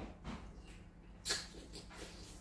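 Close mouth sounds of a man chewing food he has just eaten with his fingers: faint wet chewing with one short, louder mouth or nose noise a little past halfway.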